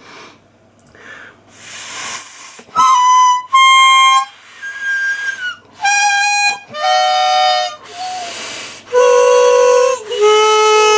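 Hohner Sonny Boy harmonica being blown and drawn in about seven short, separate notes, preceded by a rush of air, with a lot of breathy hiss around the thin tones. It sounds terrible because the harmonica is clogged: its reeds barely play.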